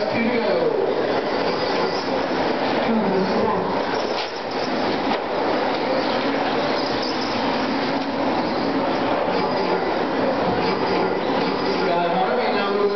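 Several electric 2WD RC racing trucks running on a dirt track, their motors whining and rising and falling in pitch as they accelerate and slow, over a steady din of the pack.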